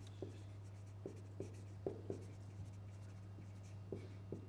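Stylus writing on the glass of an interactive touchscreen board: a series of faint, irregular taps and short strokes as a word is written, over a steady low electrical hum.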